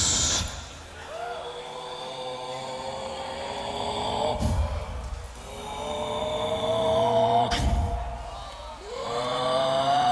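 Beatboxer performing a slow passage into a handheld microphone: a long held, pitched vocal tone that slowly rises, broken twice, with a low kick about halfway and another about three quarters of the way through.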